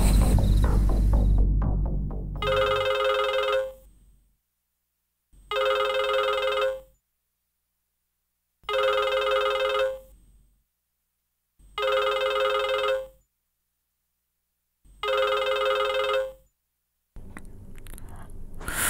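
A phone ringing with an electronic warbling ring, five rings about three seconds apart, each lasting just over a second, with silence between them. Film music fades out in the first two seconds, before the first ring.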